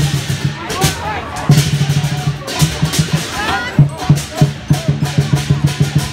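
Lion dance percussion: a big drum beaten in fast, dense rolls with sharp accents, with cymbal crashes over it. Crowd voices are heard over the playing.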